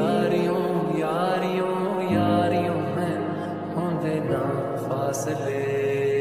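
Slowed, reverb-heavy Hindi lofi love song: a drawn-out, gliding vocal line over soft sustained chords and a bass note that changes about every two seconds.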